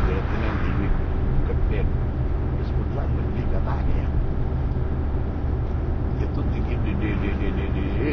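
Covertly recorded conversation: muffled men's voices talking in Sicilian dialect over a loud, steady low rumble of a car on the move, as picked up by a hidden microphone inside the vehicle.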